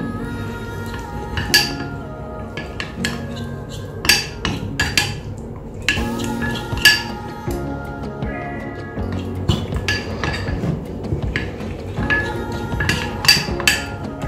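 Background music, with a metal spoon clinking and scraping against a glass dish as it stirs a thick corn pap paste with a little water. The clinks come irregularly, several in quick clusters.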